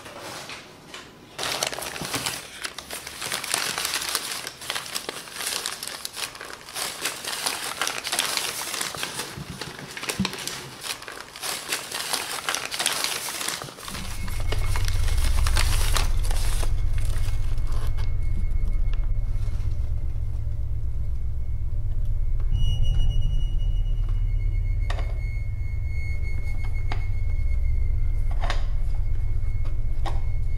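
Crumpled newspaper packing crinkling and rustling as hands dig through a cardboard box and unwrap something from it. About halfway through, the paper noise gives way to a loud, steady low drone from the film's score, with a faint thin high tone and a few soft clicks over it.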